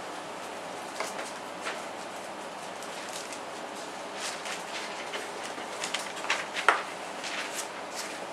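Bible pages being turned and handled: soft paper rustles and light clicks over a steady room hiss, busier in the second half.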